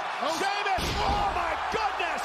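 A 300-pound-plus wrestler crashing from the top rope onto his opponent and the ring canvas about a second in: a heavy, booming thud from the ring that lingers briefly, with shouting voices around it.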